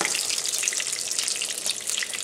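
Melted butter and rendered sausage fat sizzling in a hot pan: a steady crackling hiss with many fine pops.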